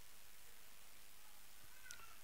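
A quiet pause holding only a steady faint hiss of room tone. Just before the end comes a faint, very short high squeak with a small click.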